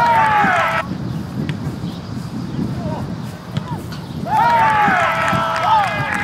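People shouting at a soccer game: a short yell at the start and a longer, drawn-out call with falling pitch about four seconds in, over a steady outdoor background rumble.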